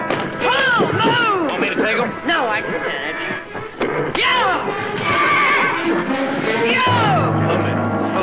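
Horses of a wagon team whinnying again and again, each call a quavering rise and fall in pitch, over orchestral music.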